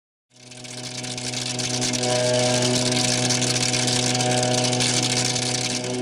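Synthesized logo-intro sound effect: a steady droning hum with a bright hiss layered over it, swelling up over the first two seconds and then holding.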